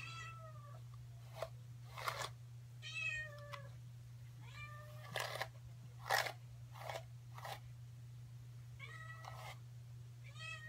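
A domestic cat meows four times, each meow a separate drawn-out call. Between the meows come short brushing strokes through hair, the loudest about six seconds in.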